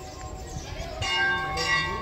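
Brass temple bells ringing: a bell is struck about a second in and again shortly after, its tones ringing on over the fading ring of earlier strikes.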